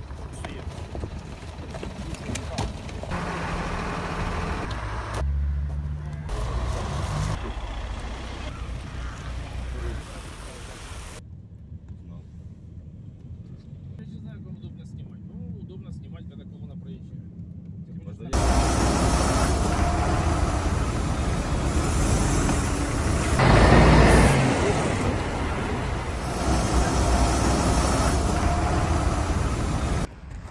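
Shifting outdoor street sound with sudden changes: people's voices and vehicle engines, with a quieter, muffled stretch of road noise from inside a moving car in the middle and louder traffic and voices after that.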